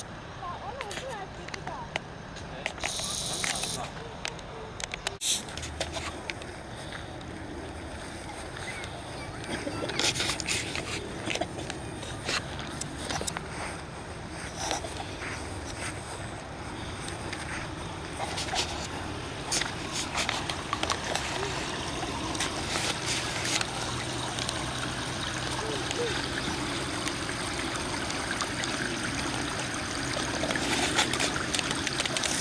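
Outdoor ambience of people talking at a distance, with water trickling in a small stream.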